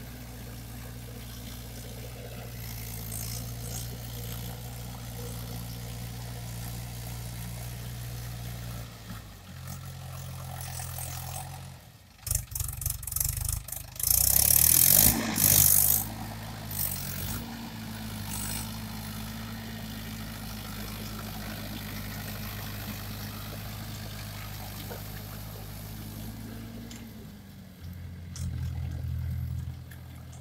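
Tractor diesel engine running under load as the tractor works a flooded paddy field, its note shifting several times. Roughly halfway through comes a loud burst of crackling noise, the loudest part. Then the engine speeds up and runs steadily.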